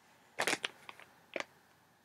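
A few short, quiet clicks and rustles of a small plastic toy figure and its foil blind bag being handled, in three brief groups.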